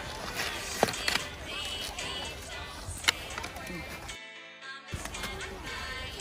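Background music with steady held notes over live crowd chatter and noise, with a few sharp knocks about a second in and again about three seconds in.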